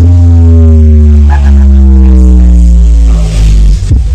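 A sound system's subwoofers playing one long, very loud, deep bass note in the music, its pitch sliding slowly downward before it cuts off near the end.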